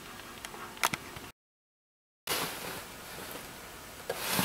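Quiet room tone with a few light clicks about a second in. It then drops to a second of dead silence where the recording is cut, and the faint hiss of the room comes back.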